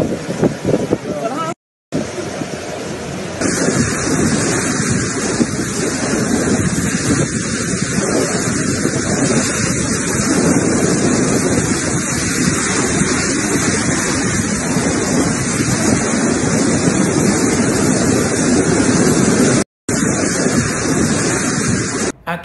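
Hurricane-force wind blowing hard in a dense, steady rush, broken by two brief silent dropouts, one about two seconds in and one near the end.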